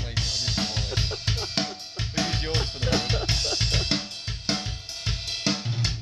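A drum kit being played in a steady beat of bass drum thumps and snare hits.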